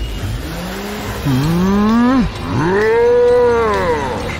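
A cartoon bull character's voice in two long moo-like calls: the first rises in pitch, the second is higher, arching up and then falling away near the end.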